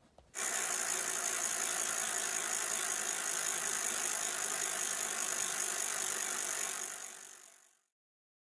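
Edited-in sound effect of a bicycle freewheel ratcheting, a fast steady run of clicks as the wheels spin. It starts just after the beginning and fades out near the end.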